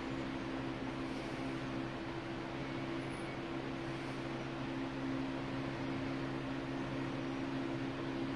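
Air King box fan coasting down after being switched off, its slowing blades giving a soft steady rush of air over a steady low hum.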